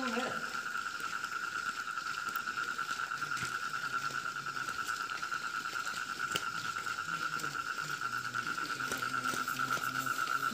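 A steady, rapidly pulsing high trill, typical of crickets calling at night, runs unbroken throughout. Faint voices sound in the background from about two-thirds of the way in.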